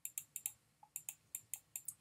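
Faint, irregular clicks of a stylus tip tapping on a pen tablet while handwriting numbers, about ten in two seconds.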